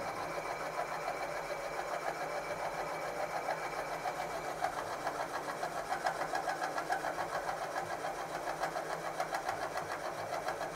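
Turret milling machine's spindle running steadily with a fast, even pulse, its power quill feed carrying a reamer down through a Cooper S rocker arm bushing to size it.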